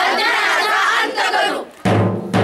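A group of children shouting together in a loud chant, which breaks off after about a second and a half; just before the end a drum is struck once.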